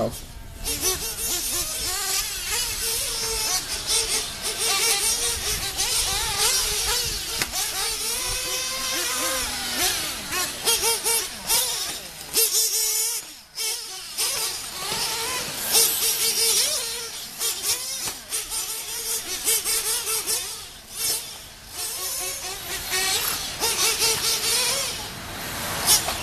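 Nitro-powered RC truggies racing on a dirt track, their small engines revving up and down in pitch as they accelerate and brake. The sound drops briefly about halfway through.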